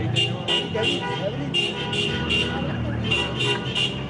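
Street celebration noise: horns tooting in a steady, rhythmic din, pulsing about three times a second, over the voices of a marching crowd.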